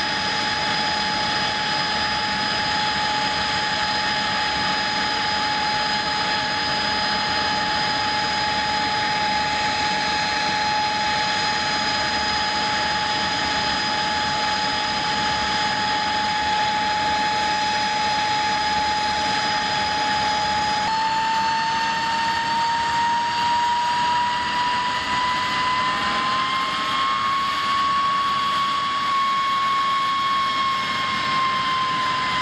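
Jet engine of a de Havilland twin-boom jet running with a steady high whine. About two-thirds of the way in, the whine climbs slowly in pitch for several seconds and then holds.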